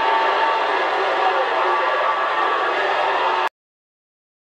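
CB radio receiver hissing with loud, steady band noise (static) from its speaker, faint garbled signals under it; it cuts off suddenly about three and a half seconds in.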